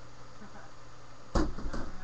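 Strikes landing on a heavy punching bag: a sudden loud thud a little over a second in, then a lighter hit, with a voice calling out.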